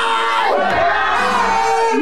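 A woman preaching in a loud shouting voice into a microphone, with the congregation's overlapping shouts and cries. A low steady note comes in under a second in.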